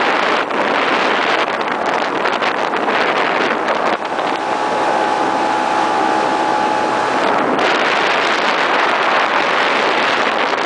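Riverboat motor running under way up a shallow river, a steady loud rush of engine, water and wind on the microphone. From about four to seven and a half seconds in, a steady engine tone stands out more clearly, then sinks back into the rush.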